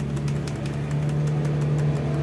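Keys of a handheld calculator being pressed, a quick run of soft clicks, over a steady low hum.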